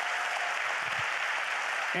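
A church congregation applauding, many hands clapping in a steady, even wash of sound.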